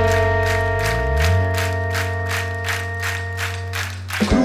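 Live rock band playing: a held, ringing chord over even drum strikes about four a second, with a low note sliding upward about a second in. The held chord cuts off just before the end.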